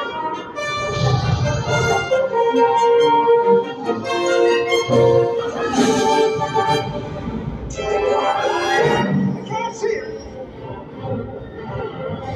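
Live symphony orchestra playing the film's battle score, with held chords. Two loud noisy bursts about six and eight seconds in break through the music.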